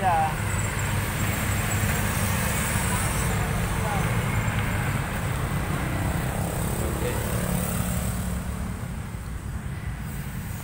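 Steady low rumble of road traffic passing on the street.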